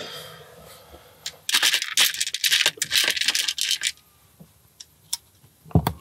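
Small plastic LEGO pieces being handled: about two seconds of dense rattling and rustling, then a few scattered light clicks.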